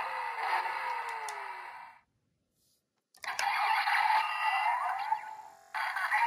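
Kamen Rider Drive Driver toy belt playing electronic sound effects through its small built-in speaker: a burst of about two seconds with a falling tone, a gap of about a second, then another burst of about two and a half seconds.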